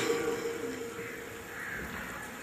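A man's amplified Quran recitation dies away on a held note through the microphone about a second in, leaving a quiet outdoor background with faint bird calls.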